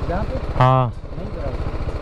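Single-cylinder engine of a BMW G310GS motorcycle idling steadily, a low, even pulsing under short bits of speech.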